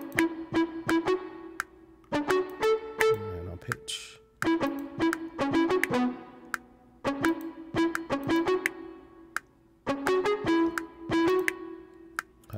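Cakewalk's SI-Bass Guitar virtual instrument playing a short riff of quick plucked notes through the TH3 amp simulator with a fuzz pedal and spring reverb, giving it a bright, distorted guitar-like tone. The riff loops, coming round about every two and a half seconds.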